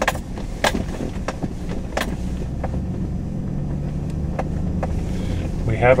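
Truck driving slowly over a rough grassy track, heard from inside the cab: a steady low engine rumble with several sharp knocks and rattles from the bumps.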